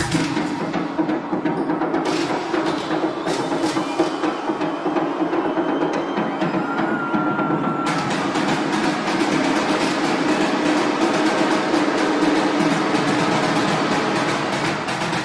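Live techno set in a breakdown: the kick drum drops out, leaving a dense, fast rattle of percussion over a held low drone. The treble opens up in steps, about two seconds in and again near eight seconds, building toward the beat's return.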